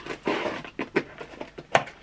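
Cardboard packaging being handled: a short rustle, then several sharp clicks and taps, the loudest near the end.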